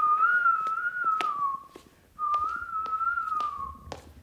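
A person whistling two short phrases of a carefree tune, each under two seconds, the pitch wavering gently and dipping at the end of each phrase, with a few light footsteps on a hard floor.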